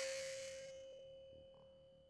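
The fading tail of a loud edited hit, with a steady humming tone dying away over about two seconds.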